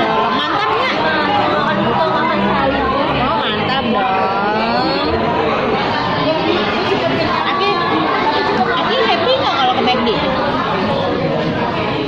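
Several voices talking over one another: chatter in a large room.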